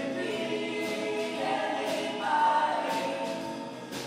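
Mixed community choir singing held notes in harmony. It swells to a louder, higher held note about halfway through.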